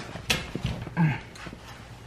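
A few short knocks and scuffs as hands work at the base of an upholstered chair, pulling at its fabric skirt, with the most distinct one about a second in.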